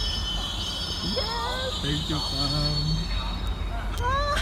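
A GO Transit bilevel commuter train rolling past with a steady low rumble and a high wheel squeal that fades away over the first couple of seconds.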